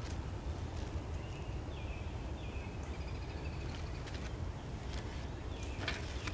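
Steady low outdoor rumble with faint rustling and clicks of papers being handled, and a few short, faint bird chirps about two to three seconds in.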